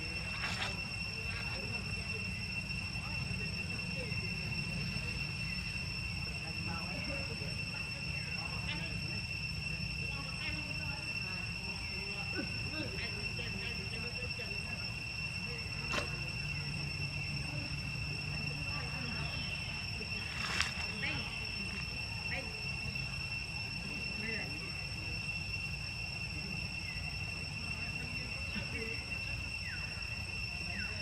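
Steady outdoor background: a constant high-pitched whine over a low rumble, with faint scattered chirps. Two sharp clicks come through, one about halfway and another some five seconds later.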